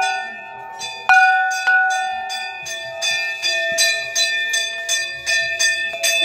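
Hanging metal temple gong struck with a wooden mallet, the loudest strike about a second in, its tones ringing on, followed by rapid repeated metallic strokes about three or four a second.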